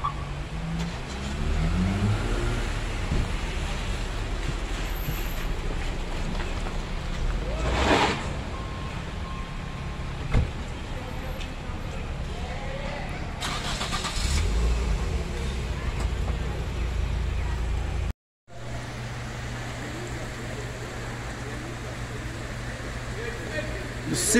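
Steady rush of a fast-flowing, flood-swollen river, with a motor vehicle passing close by in the first few seconds, its engine note rising. The sound cuts out briefly about 18 seconds in.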